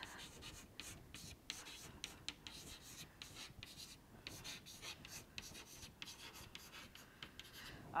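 Faint scratching strokes of writing by hand: a run of short, irregular strokes with brief pauses between them.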